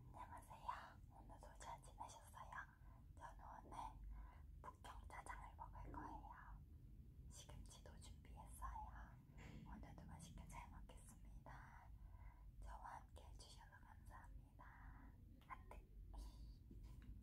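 A woman whispering softly in Korean, with a few small mouth clicks.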